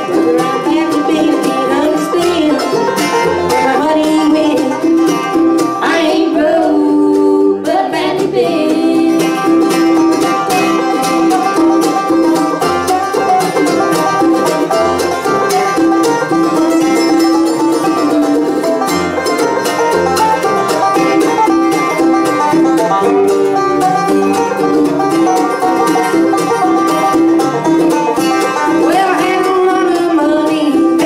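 Live bluegrass band playing: banjo, mandolin and acoustic guitar over upright bass.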